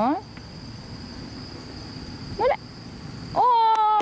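An insect, likely a cricket, buzzing steadily at one high pitch over faint outdoor background noise. A voice calls out briefly about two and a half seconds in, and a loud drawn-out 'oh' starts near the end.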